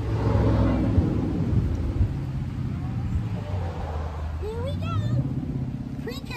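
A low, steady rumble, swelling louder over the first two seconds, with a short rising voice about four and a half seconds in.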